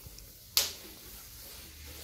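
A single sharp click about half a second in, over a faint low hum.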